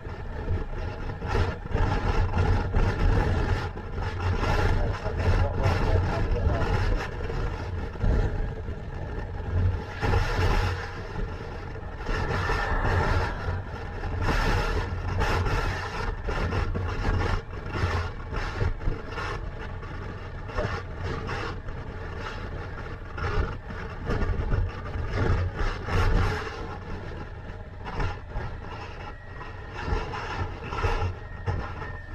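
Motorcycle engine running at a steady road speed under heavy wind buffeting on the microphone, with road noise. The loudness rises and falls in gusts.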